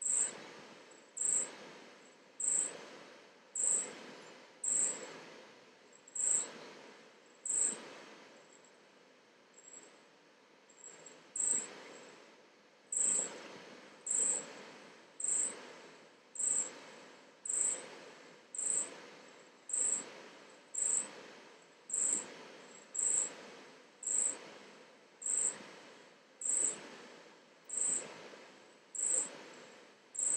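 An insect chirping faintly in short high-pitched chirps, about one a second, with a pause of about three seconds a third of the way through.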